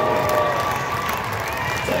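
Crowd cheering and applauding for a player just introduced over the PA, with the end of the announcer's drawn-out call of the name fading out in the first second.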